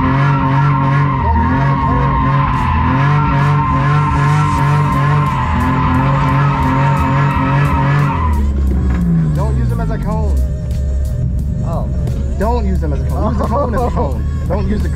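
BMW E46 M3's straight-six engine, heard from inside the cabin, held at high revs with brief dips while the tyres squeal through a drift. About eight seconds in the revs fall away, the squeal stops, and the engine settles to a steady idle.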